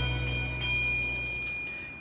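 A brass tube chime struck with a small hammer, ringing with a high, clear, steady tone that fades away near the end. Theme music dies away under it.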